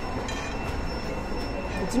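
Steady background din of a food court: an even hum of room noise with no distinct events.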